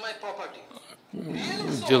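A man speaking, with a brief pause about a second in.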